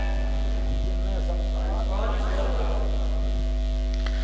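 Steady, low electrical mains hum from the microphone and amplifier chain, with a faint voice in the background.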